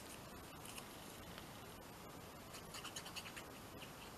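Faint scratchy rustling of a small paper piece being handled and dabbed with tacky glue from a squeeze-bottle applicator, with a few small ticks in the second half.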